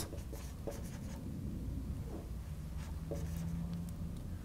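Dry-erase marker writing on a whiteboard: faint, scattered scratching strokes over a low steady room hum.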